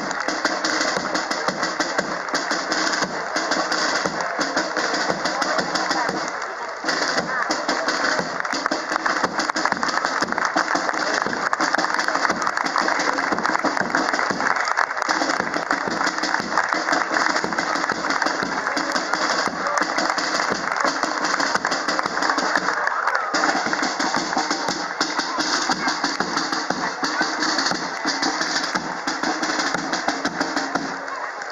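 Marching band playing in the street, its drums beating throughout, mixed with the chatter of the crowd lining the route.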